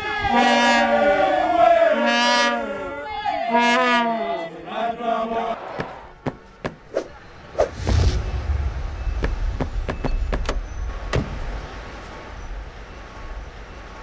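A group of voices chanting a repeated phrase for the first five seconds or so. Then a run of sound effects: sharp clicks, a low rumbling whoosh about eight seconds in, and scattered ticks.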